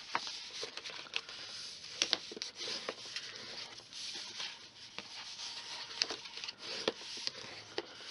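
Heavy cardstock being folded along its score lines and burnished flat: soft papery rubbing with scattered light taps and clicks.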